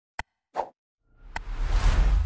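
Subscribe-button animation sound effects: a sharp mouse-click, a short pop about half a second in, then a whoosh that swells to the loudest point near the end, with another click partway through it.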